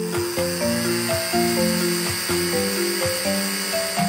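Blender whirring steadily as it purées strawberries, over cheerful children's background music with a bouncy melody.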